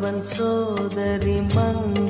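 Devotional music: a held melodic line over a steady drone, with regular percussion strokes.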